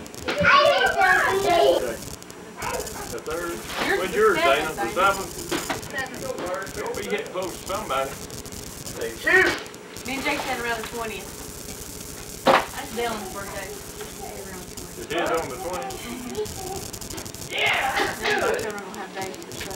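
Indistinct talk and chatter of adults and a small child in a room, with one sharp knock about two-thirds of the way through.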